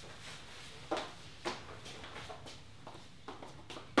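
High-heeled shoes clicking on a tile floor: two sharper steps about a second in, then a few fainter taps, and one more sharp click at the end.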